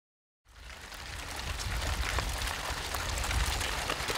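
Outdoor ambient noise: a steady rush with a low rumble, fading in about half a second in after silence, with a few faint ticks.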